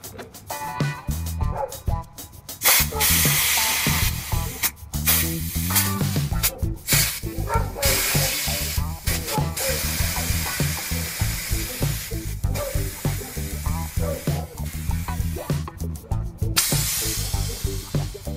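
Several long bursts of compressed air hissing from an air-suspension valve as the air bags are let down. Background music with a steady beat plays throughout.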